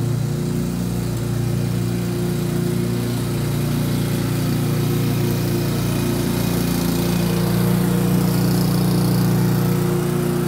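Petrol engine of a 20-year-old Rover rotary lawnmower running steadily while cutting grass, getting a little louder near the end as the mower comes closer.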